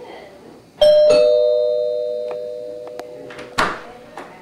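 Two-tone doorbell chime: a higher ding, then a lower dong about a third of a second later, both ringing on and fading slowly. A brief noisy burst comes near the end.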